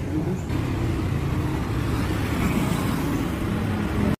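Steady road traffic noise from a city street, with cars and motorbikes passing.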